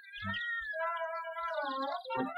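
A cartoon cat's long, wavering meow, voiced like a dazed moan, with a short low knock just before it starts.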